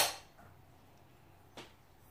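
A single sharp clack of a hard kitchen object knocking on the countertop at the very start, dying away quickly. After it comes near-quiet room tone with a faint soft rustle a little past halfway.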